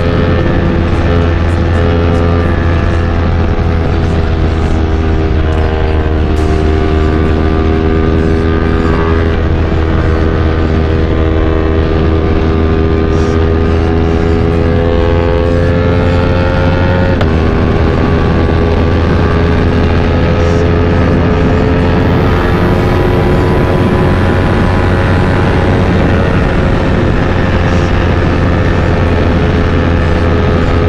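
Yamaha R3's parallel-twin engine pulling steadily at highway speed, its note slowly rising and falling, with a quick gear change about 17 seconds in that drops the pitch slightly. A steady low wind rumble on the microphone runs underneath.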